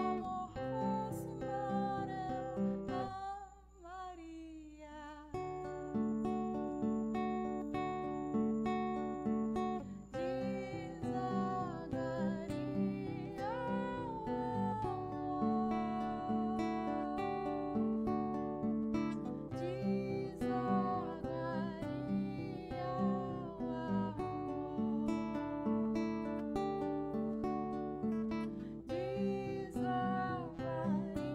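A woman singing over acoustic guitar in a live song performance. The low accompaniment drops out briefly a few seconds in, then the guitar and voice carry on.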